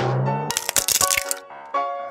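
Cartoon sound effect of an eggshell cracking and shattering: a sharp crack at the start, then a burst of breaking shell about half a second in, over background music.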